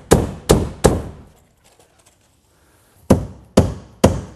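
Hammer driving cap nails through house wrap and foam insulation into wood studs: three quick blows, a gap of about two seconds, then two more near the end.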